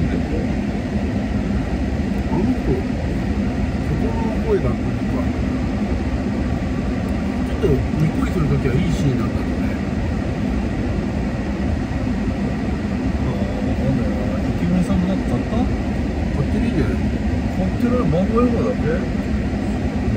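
Steady low hum inside a parked car with its engine running, with faint, low voices underneath.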